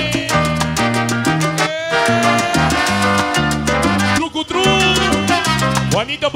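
Salsa music played loud through a sonidero's sound system: a bass line stepping from note to note under quick, steady percussion strokes, with instruments above.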